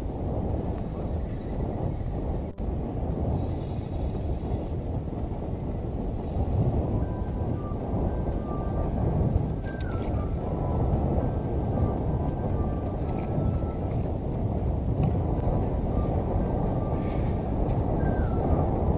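Steady low rumble of wind on the microphone, with faint background music holding sustained notes from about seven seconds in.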